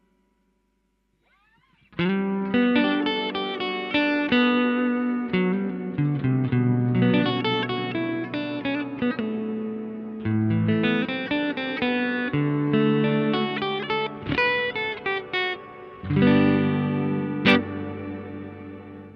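Electric guitar played through a Mooer ShimVerb reverb pedal, starting about two seconds in: picked single notes and chords that ring on and overlap one another, with a sharp struck note near the end.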